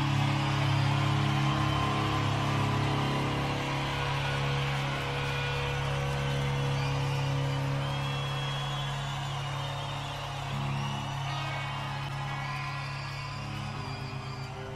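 Rock music with no words heard: sustained chords held over steady low notes, slowly getting quieter.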